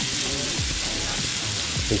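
Sliced carrots frying in hot oil and melting butter in a cast iron skillet, a steady sizzle.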